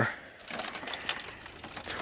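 Faint rustling and light clinks as the wrecked flat-screen TV's bent sheet-metal back and broken parts are handled.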